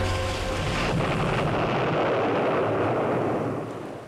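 Explosion sound effect for a ship hit by a torpedo: a long, dense rumble that dies away over the last second or so.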